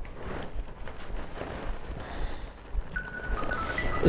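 Soft paper rustling as the pages of a small booklet are handled and turned. Near the end come a few faint steady tones that step in pitch, like a short snatch of melody.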